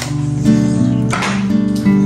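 Background music on strummed acoustic guitar, with held chords that change every half second or so.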